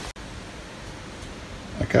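Steady, even background hiss with no distinct events, after a brief cut-out at the start; a man says "okay" near the end.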